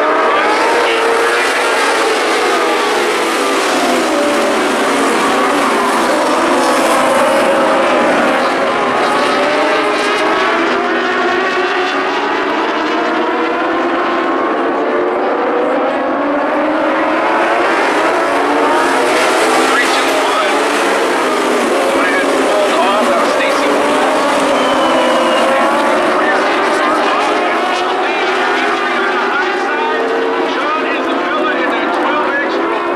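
A pack of motorcycle-engined dwarf race cars at racing speed. Many high-revving engines overlap, their pitch rising and falling as the cars accelerate and lap the oval.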